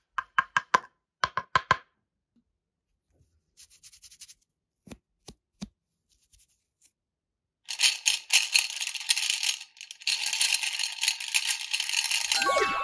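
Small plastic beads clicking a few at a time, then a dense rattling clatter of beads from a little before two-thirds of the way in to the end.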